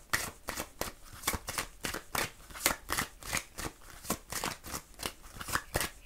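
A deck of oracle cards being shuffled by hand: short, crisp card clicks, about two or three a second.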